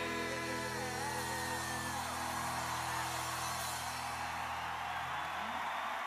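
A live rock band holding its final chord, with a sung note trailing off in the first two seconds; the chord rings out and stops about five seconds in as crowd cheering and applause rise.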